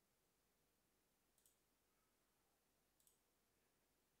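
Near silence with two faint mouse clicks about a second and a half apart.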